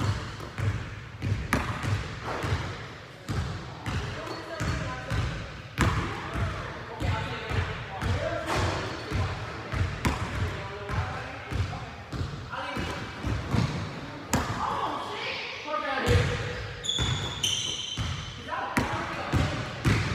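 A basketball bouncing repeatedly on a hard floor, dribbled over and over in a free-throw shooting routine, many short thuds through the whole stretch.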